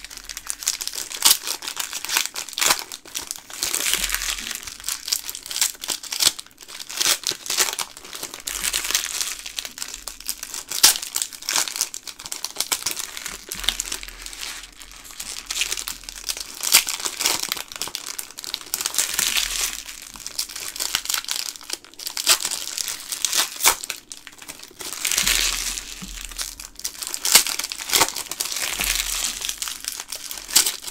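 Foil wrappers of hockey card fat packs being torn open and crumpled by hand: a continuous crinkling full of sharp crackles, swelling in uneven louder spells.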